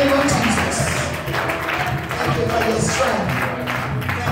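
Church praise music playing steadily, with voices calling out over it.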